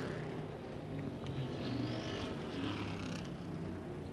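Engines of classic-bodied dirt track race cars running at racing speed around the oval, a steady drone from several cars with the pitch bending gently as they go through the turns.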